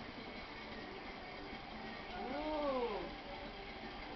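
A single wordless voiced hum about two seconds in, rising and then falling in pitch over roughly a second, heard over a steady background hum.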